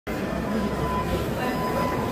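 Steady mechanical rumble of warehouse machinery, with a thin, steady high-pitched tone joining about half a second in and faint voices in the background.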